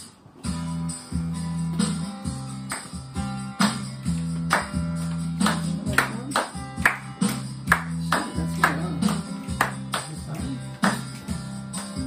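Instrumental music from a speaker, the intro of the song's backing track: guitar chords over a steady bass, with a tambourine-like beat. It starts about half a second in.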